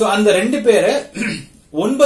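Only speech: a man talking, with a brief pause about three-quarters of the way in.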